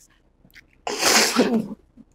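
A woman coughs once, a single harsh, breathy cough about a second in that ends with a bit of voice.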